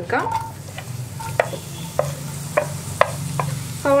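Sliced onions and green chillies sizzling as they drop into hot oil in a nonstick frying pan. A wooden spatula taps sharply about eight times as it scrapes them off a plate into the pan.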